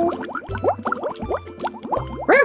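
Cartoon bubble sound effect: a rapid string of short, rising bloops, several a second, laid over background music.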